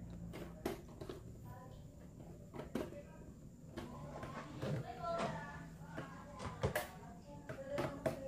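Screwdriver working the screw terminals of contactors, with scattered sharp clicks of metal on the terminals, the brightest near the end. Faint background voices run underneath.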